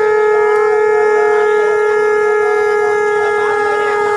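Conch shell (shankh) blown in one long, loud, steady note.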